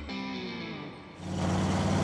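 Electric guitar music ending on falling notes, then about a second in a V8 engine comes in running steadily: the 1968 Camaro's GM Performance ZZ502 big-block crate motor.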